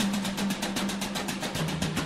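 Music with a rapid drum roll over a held low note that steps down in pitch about one and a half seconds in.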